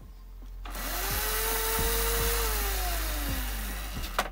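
Razor MX350's 24-volt brushed electric motor spinning up with a rising whine and a harsh hiss about a second in, then winding down slowly in pitch until it stops near the end. The owner says the motor needs new brushes and maybe replacing.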